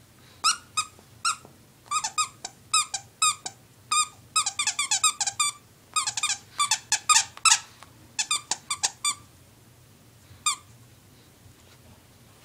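Squeaker in a plush ladybug dog toy squeaking over and over as a Shih Tzu bites and chews it: quick runs of short, high squeaks, thickest in the middle, then a single squeak near the end.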